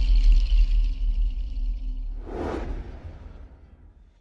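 Cinematic outro sound design: a deep bass rumble under a high shimmering tone, then a single whoosh about two and a half seconds in, after which everything fades out.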